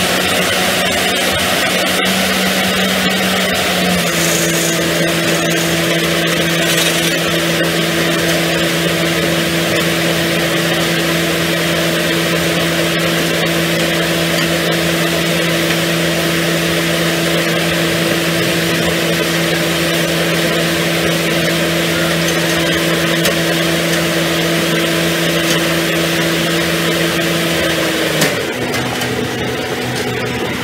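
Hydraulic vibratory hammer running on a steel pile casing, fed by its diesel hydraulic power pack: a loud, steady mechanical hum. The pitch steps down slightly about four seconds in, then drops further and the noise eases off a little near the end.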